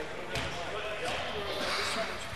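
A basketball bounces once on the gym floor, a sharp knock about a third of a second in. Low voices carry on in the hall around it.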